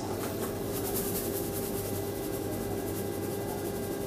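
Steady low mechanical hum with a few faint steady tones and no distinct events: room tone of running machinery.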